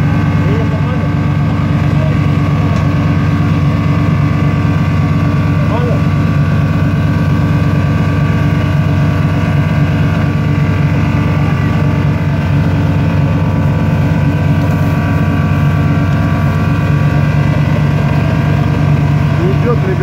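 Off-road 4x4 engine held at steady high revs, a continuous drone with no breaks, while pulling a stuck vehicle through mud on a tow line.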